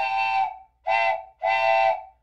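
Three loud whistle toots at one steady, chord-like pitch, like a steam whistle. The middle toot is the shortest.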